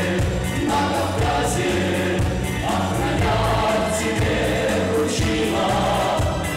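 A mixed vocal ensemble of two men and two women singing a song into microphones, with instrumental accompaniment that has a steady beat.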